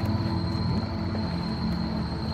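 Low ambient drone from the installation's outdoor sound system: layered deep sustained tones that shift slightly about a second in, with a thin steady high tone above them.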